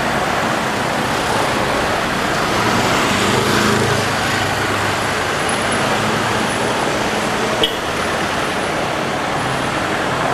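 Steady road traffic noise, with a nearby vehicle engine swelling louder about three to four seconds in and a single sharp click a little before eight seconds in.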